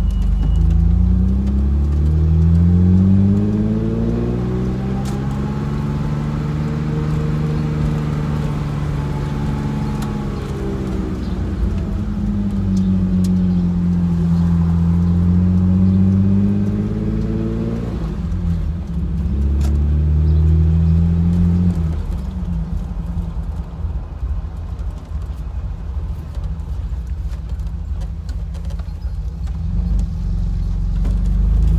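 Car engine heard from inside the cabin, its pitch rising and falling as the car speeds up and slows, with an abrupt drop a little past halfway, like a gear change. Wind and road noise come in through the open windows.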